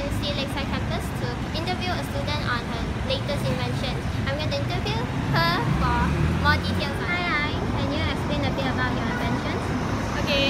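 A young woman speaking, with a steady low rumble of road traffic underneath.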